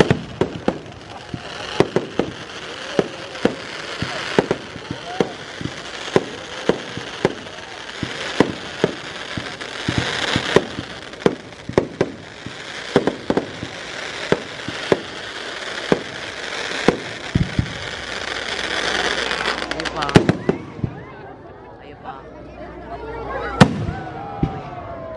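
Aerial fireworks display: a rapid string of shell bursts and reports, several a second, over a continuous crackle for about twenty seconds. Then it thins out to a quieter stretch, with one loud bang near the end.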